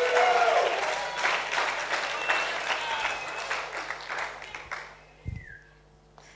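Audience applauding, with a few cheering voices at the start. The applause fades out about five seconds in, followed by a single low thump.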